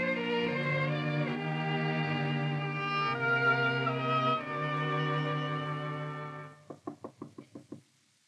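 Orchestral string music bridge of held chords that change a few times, ending about six and a half seconds in. Then a quick run of knocks on a door, a radio sound effect.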